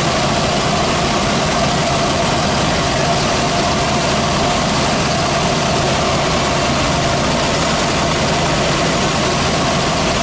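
Robinson R44 helicopter in flight, its piston engine and rotors running with a steady, loud noise heard inside the cockpit.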